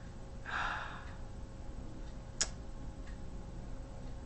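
A short breathy exhale from a person about half a second in, then a single sharp click near the middle, over a low steady room hum.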